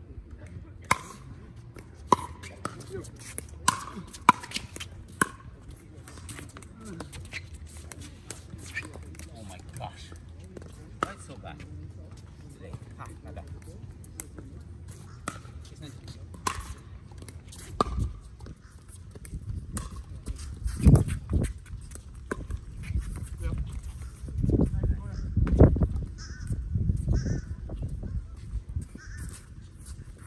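Pickleball rally: a run of sharp, hollow pops of paddles striking the plastic ball, roughly one a second, for the first seventeen seconds or so. After that, low rumbling gusts of wind buffet the microphone and are the loudest sound, peaking twice.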